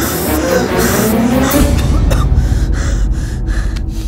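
Dramatic film background score. About a second and a half in, a deep rumble comes in under it, with a fast pulsing higher up.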